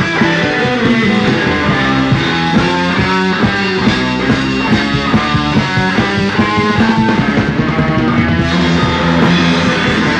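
Live blues-rock band playing: electric guitar over bass and drums, with a fast run of lead guitar notes through the middle.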